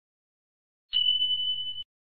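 Notification-bell sound effect from a subscribe animation: a single high electronic ding about a second in, holding one steady pitch for just under a second before cutting off.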